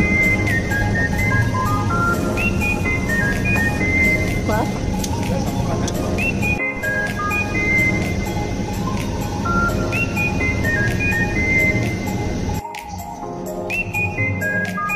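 Background music with a repeating melody, the same phrase coming round every few seconds; the bass drops out near the end.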